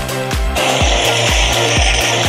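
Electronic dance music with a steady kick drum, a little over two beats a second. About half a second in, a loud steady hiss from stage CO2 jets blasting joins it.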